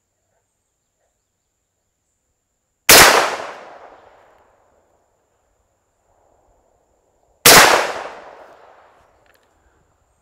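Two shots from a TriStar Viper G2 28 gauge semi-automatic shotgun firing Brenneke slugs, about four and a half seconds apart. Each shot is a sharp report that rings out for over a second.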